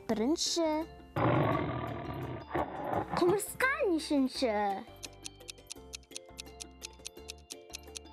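A big cat's roar sound effect, loud and about a second long, followed by brief high cartoon voices and then light children's music with plinking notes.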